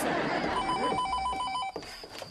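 Landline telephone bell ringing once: a rapid trill that starts about half a second in and lasts a little over a second before cutting off.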